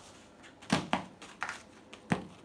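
Small wooden plank knocking against the floor as a cockatoo plays with it and tosses it: three short, sharp knocks, the first two close together and the third about half a second later.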